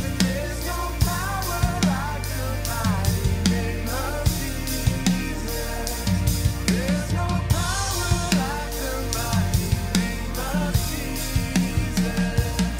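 Acoustic drum kit, a PDP kit with Zildjian cymbals, played in a steady rock beat of kick and snare hits along to a worship-rock band recording. A cymbal crash rings out about halfway through.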